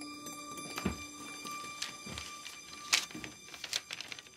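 Faint background score of steady held tones, with a few light taps and clicks scattered through, about one a second.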